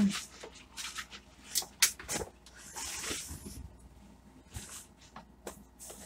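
Handling noises as electrical plugs and cords are worked: a scattered series of light clicks and knocks, with a brief rustle about halfway through.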